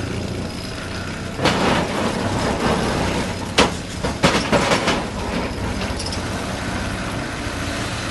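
Excavator running steadily with an eccentric vibratory ripper attachment working against a rock face, a continuous low machine drone. Rock cracks and breaks away in sharp knocks, once about a second and a half in and several times in the middle.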